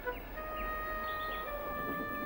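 Soft background music: a held note with overtones that steps down slightly about one and a half seconds in.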